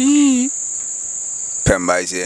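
Crickets trilling continuously in a steady, high-pitched drone. A man's brief wavering hummed note comes at the start, and speech returns near the end.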